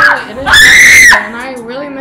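A person's high-pitched scream, loud and held for a little over half a second, about halfway through, with a voice talking before and after it.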